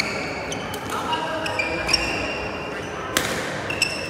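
Badminton doubles rally in a large hall: sharp racket strikes on the shuttlecock at the start and about three seconds in, with short high squeaks of players' shoes on the court floor in between, over background chatter.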